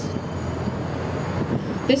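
Steady outdoor city background noise, an even rumble with no distinct events, and a woman's voice starting to speak near the end.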